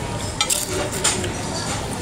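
Cutlery clinking on a ceramic dinner plate: a few short, sharp clinks about half a second and a second in, over steady background noise.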